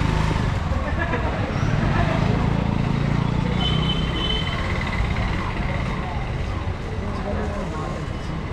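Busy market-street traffic: the engines of passing auto-rickshaws, scooters and cars running, with people's voices in the background. A brief high tone sounds about halfway through.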